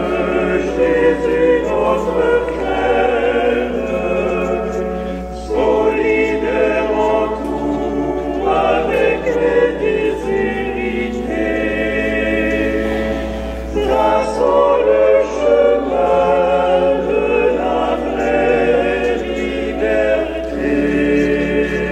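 Voices singing a church hymn in long, sustained phrases with vibrato, with short breaks between phrases. It is most likely the opening hymn of the Mass.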